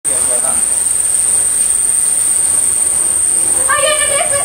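Ground fountain (flowerpot) firework spraying sparks: a loud, steady hiss with a steady high whine over it. A person's voice cuts in near the end.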